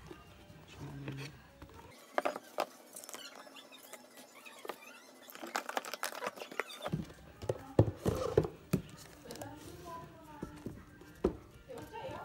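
Paperboard packaging and a wrapped laptop being handled: a scattered run of sharp taps, knocks and scrapes as the box lid and tray are moved and the MacBook Air is lifted out. Voices and music can be heard faintly behind it.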